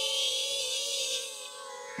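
DJI Flip quadcopter's propellers whining steadily as it hovers carrying a 150 g payload, its motors under strain from the load. The whine is a little louder in the first second and eases off toward the end.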